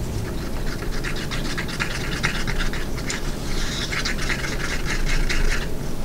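Wooden stir stick scraping around the inside of a small cup of epoxy resin in quick, repeated strokes, stirring in drops of brown alcohol ink to tint it. The scraping stops just before the end.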